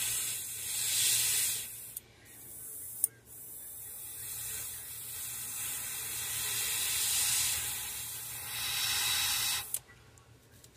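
Airbrush spraying paint through a stencil at about 20 PSI: a steady airy hiss that stops briefly about two seconds in. A sharp click sounds near three seconds, then the hiss resumes and cuts off just before the end.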